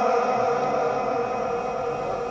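The lingering echo of a man's chanted Quran recitation through a microphone and sound system, fading slowly between phrases.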